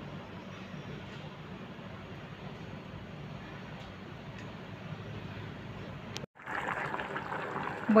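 Pot of lentil soup simmering on a gas stove: a steady low bubbling hiss. It cuts out abruptly about six seconds in and comes back louder and brighter.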